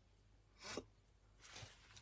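Near silence, with a faint brief rustle about two-thirds of a second in and a fainter one near the middle.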